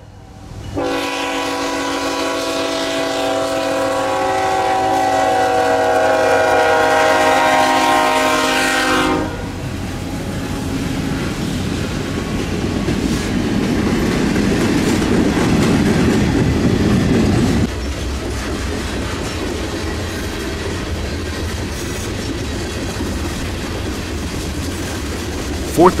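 Freight train horn sounding one long blast of about eight seconds as the train comes into a grade crossing. It cuts off as the Tier 4 diesel locomotives pass with a loud low engine rumble. About eight seconds later that rumble drops away, leaving the freight cars rolling by with a steady clickety-clack.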